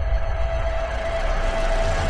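Cinematic logo-intro sound effect: a sustained rumbling whoosh with one held tone running under it, the tail of an impact hit.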